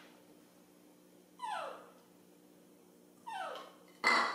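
Baby monkey crying for milk: two short whimpering cries, each sliding steeply down in pitch, about two seconds apart.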